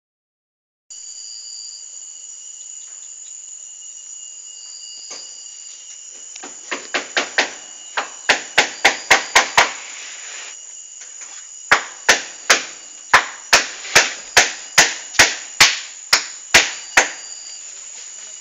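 A steady chorus of insects, crickets or cicadas, holding several high tones. About a third of the way in it is cut across by a run of sharp, regular knocks, two to three a second and louder than the chorus. After a brief pause a second run of knocks stops shortly before the end.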